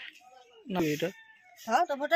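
A rooster crowing once about halfway through, the call ending in a drop in pitch. A woman's voice starts speaking near the end.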